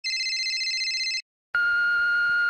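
Electronic telephone ringing, one warbling burst of about a second, then a short pause and a steady beep: the answering-machine tone that starts a voicemail recording.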